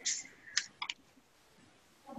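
A few short, faint computer-mouse clicks in quick succession, the last two about a quarter of a second apart.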